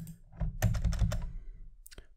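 Computer keyboard keys clicking: a quick run of several keystrokes in the first second or so.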